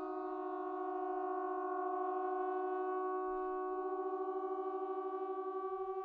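Three trombones holding soft, sustained chords, one voice moving to a new pitch while the others hold. Toward the end two closely pitched notes beat against each other in a steady wobble.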